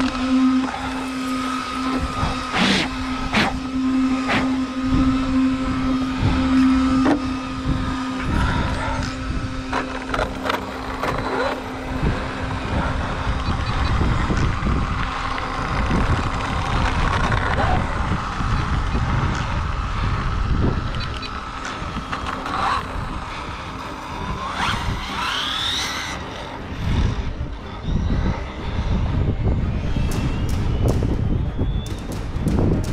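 Arrma Limitless RC car with dual brushless motors running on a tarmac road, heard from on board: motor whine over heavy road rumble and wind. A steady hum lasts the first seven seconds or so, and a whine rises near the end as the car speeds up.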